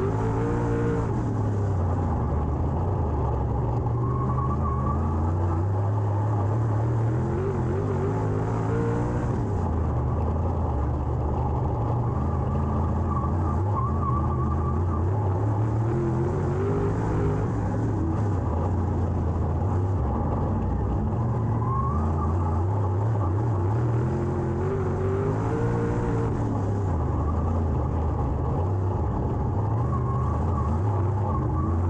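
Dirt late model race car's V8 engine heard from inside the cockpit under racing load. It revs up and eases off in a repeating cycle about every eight seconds as the car goes around the oval.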